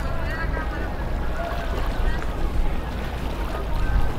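People's voices talking over a steady low rumble.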